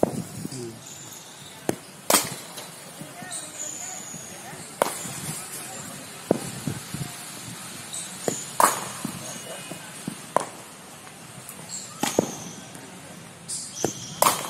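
Cricket bat striking the ball during net batting practice: four sharp cracks a few seconds apart, with softer knocks between them.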